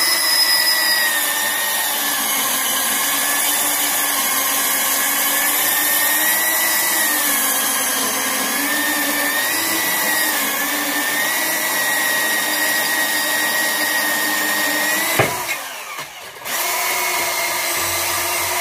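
Makita cordless portable band saw cutting through 50 by 50 steel angle: a loud, steady motor-and-blade whine whose pitch wavers slightly as it cuts. The sound drops out abruptly about 15 seconds in, then the saw runs again for the last couple of seconds.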